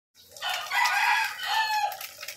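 A rooster crowing once, a call of about a second and a half that falls in pitch at its end.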